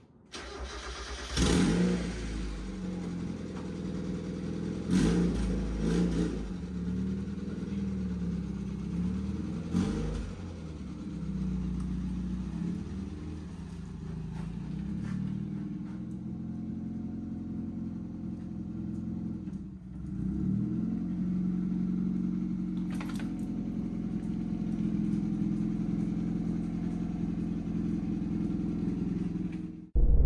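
1994 Mazda MX-5 Miata's four-cylinder engine starting up about a second and a half in, revved briefly a few times, then running at low revs as the car is driven slowly out of the garage.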